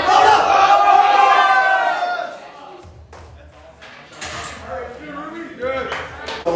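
People shouting encouragement at a lifter during a barbell bench press, loud for about two seconds and then breaking off. A sharp metal clank follows as the loaded barbell is set back into the rack's hooks.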